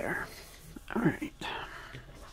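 A woman speaking indistinctly in two short snatches about a second apart, no words made out.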